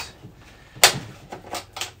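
Handling of an Arrma Typhon 6S RC buggy: one sharp clack about a second in, then a few lighter clicks of plastic and metal parts.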